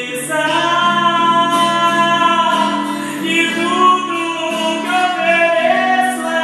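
A woman singing live into a microphone, holding long notes that bend and slide in pitch, over a steady low accompaniment of chords.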